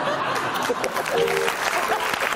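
Studio audience applauding, a steady dense clapping, with voices mixed in.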